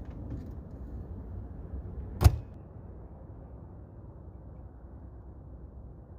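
An RV's entry door being shut, closing with one sharp slam a little over two seconds in, over a steady low background rumble.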